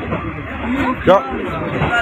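A brief spoken word over the steady running noise of a passenger train carriage.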